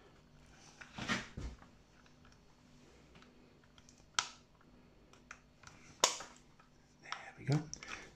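Plastic CB microphone casing being handled and pressed together: a few scattered clicks and knocks, the sharpest about four and six seconds in.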